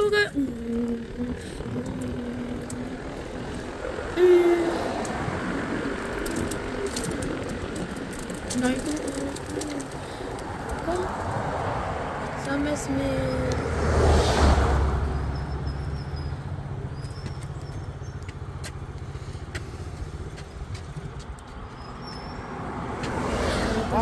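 Wind on the microphone and tyre rumble from an electric scooter riding along a wooden boardwalk, with scattered irregular clicks. A heavier low rumble swells briefly about halfway through.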